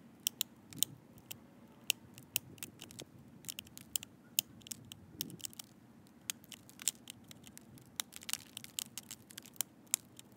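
Pressure flaking an agatized coral Clovis point with an antler flaker against a leather hand pad: a run of sharp, irregular clicks, two to four a second, as small flakes snap off the stone's edge.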